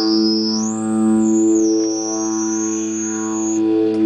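Electric guitar note sustained through a Moog MF-102 ring modulator, a steady drone. Above it a high whistling tone glides up, drops back, then holds before cutting off near the end, as the ring modulator's controls are turned.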